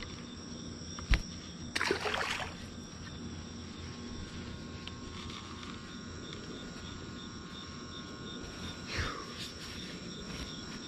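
Night chorus of crickets chirping steadily, with a sharp knock about a second in and a short splash around two seconds in as a small speckled trout is released into the water.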